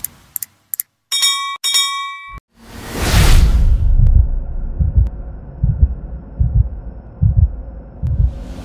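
Animated subscribe-button sound effects: a few quick clicks, then a bell dinging twice. About three seconds in, a whoosh follows, then a run of deep, evenly spaced thumps.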